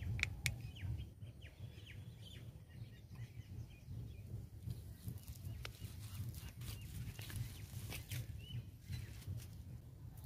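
Birds calling with short high chirps scattered throughout, over a steady low rumble with a few sharp clicks.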